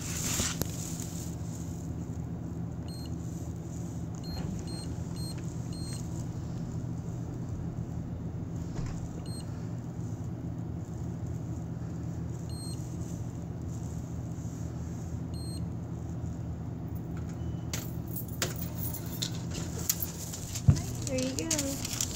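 Store checkout ambience: a steady low hum, with several faint short beeps in the first few seconds and a couple more later, typical of a register's barcode scanner. Clicks, rustles and a sharp knock come near the end.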